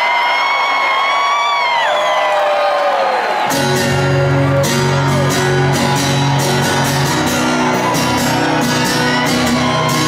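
Fans whooping with long, high, held cries that slide down in pitch. About three and a half seconds in, live amplified electric bass and drums start up: a steady, repeating low bass figure under regular cymbal hits.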